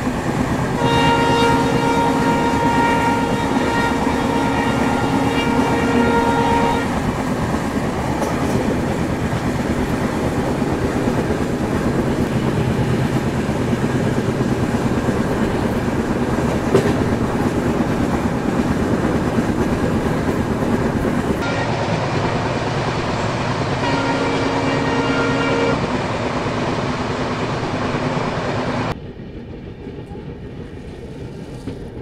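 Diesel locomotive horn sounding twice over the steady running noise and wheel clatter of a passenger train on the move. The first blast starts about a second in and lasts about six seconds; a shorter blast of about two seconds comes near the end.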